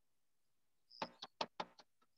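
A quick run of five or six computer keyboard key taps, starting about a second in.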